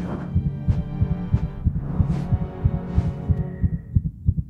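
Intro music sting: a low drone under quick, pulsing low thuds like a heartbeat, with a swooshing sweep about every three quarters of a second.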